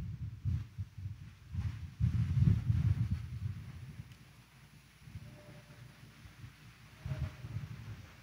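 Low, muffled thumps and rumbling from a congregation shifting onto their knees, heaviest about two to three and a half seconds in, with a brief bump near the end.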